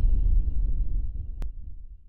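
Deep low rumble of a logo intro sound effect slowly dying away and fading out by the end, with one faint click a little past halfway.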